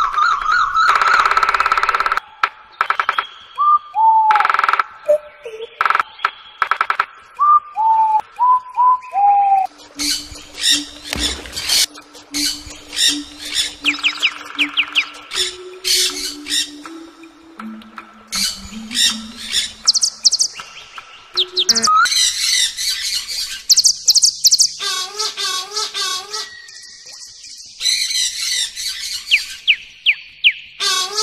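Several different wild birds calling one after another in abruptly spliced segments: a run of downward-slurred whistles, then low repeated hoots under fast high chirps, then rapid high warbling trills.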